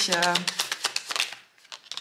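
Tarot cards shuffled by hand: a quick run of card-on-card flicks that stops about one and a half seconds in, followed by a few faint clicks.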